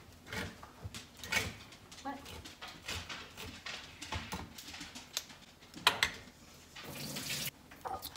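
Hand-held can opener cutting around the lid of a tin can: a run of irregular metallic clicks and scrapes, with a sharper click just before six seconds.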